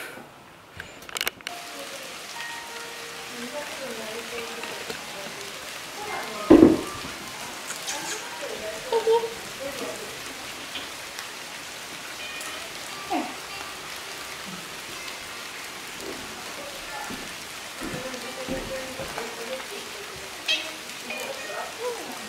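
Steady rain falling, with a single sharp knock about six and a half seconds in.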